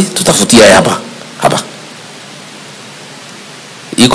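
A man's speech into a microphone for about the first second, and one short word about a second and a half in. Then a pause holding only a steady hiss.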